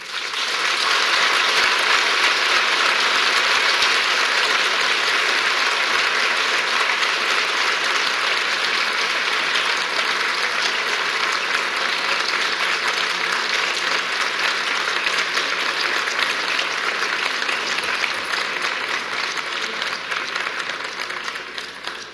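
Audience applauding: a sustained round of clapping that starts at once and holds steady, fading out near the end.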